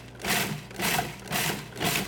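Food processor pulsed in short bursts, about three in two seconds, its blade chopping shiitake mushrooms into ground cashews.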